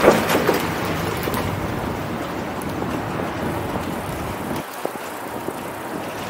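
Wind rushing over the microphone of a bicycle-mounted camera while riding, mixed with the noise of street traffic. A car horn's tail makes a louder burst right at the start, and the low wind rumble drops away about four and a half seconds in.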